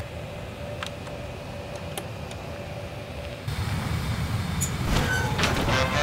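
Jet fighter engine noise, a steady low rumble under a thin hum, with a few small clicks in the first couple of seconds. A little past halfway the rumble grows louder, and there is a thump near the end.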